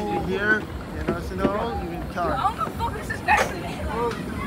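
Voices of people talking as they walk, with a steady low rumble of wind on the microphone.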